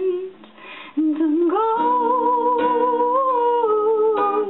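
A woman singing a slow folk song to her own strummed acoustic guitar. The voice pauses briefly near the start, leaving the guitar, then comes back in long held notes over steady strums.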